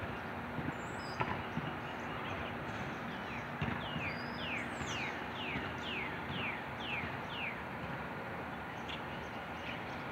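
A bird singing a run of about ten clear, down-slurred whistled notes, two or three a second, starting about three seconds in and stopping a few seconds later, over a steady background hiss with a few faint clicks.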